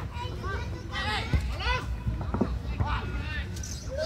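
Scattered high-pitched shouts and calls from young football players and onlookers, over a steady low rumble. A single dull thud comes about a second and a half in.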